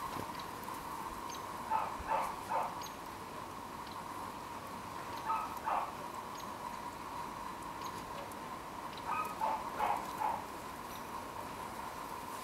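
Basset hound snuffling and sniffing with her nose in the snow, in three short clusters of sniffs, over a steady faint hum.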